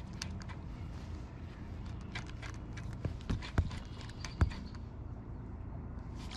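Light scattered clicks and knocks of a spinning rod and reel being worked from a kayak, with a few louder thumps around the middle, over a low steady rumble.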